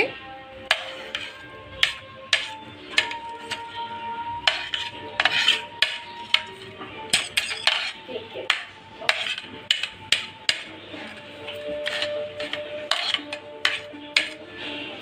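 A steel spoon clinking and scraping against a ceramic plate and a glass bowl as chopped vegetables are tipped in, in many short, irregular clinks. Soft background music with held notes plays underneath.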